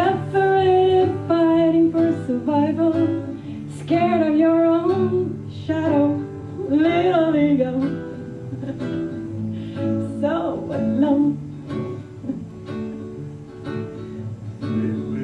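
A woman singing a slow melody into a microphone over acoustic guitar accompaniment. Her voice drops out for stretches in the second half, leaving the guitar playing.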